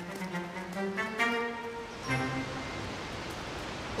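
Orchestral background score with bowed strings playing a melody of short held notes.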